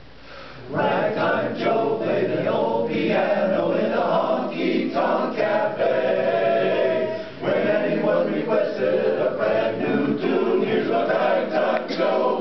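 Men's barbershop chorus singing a cappella in close harmony, coming in together about a second in, with a brief breath pause about seven seconds in.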